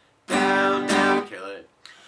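Acoustic guitar strummed downward twice on a G major chord, about half a second apart, then the strings are damped with the strumming hand so the chord cuts off suddenly: the 'down, down, kill it' strum. A short click near the end.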